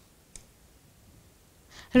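A single light tap of a pen on an interactive touchscreen board, about a third of a second in, against near-silent room tone.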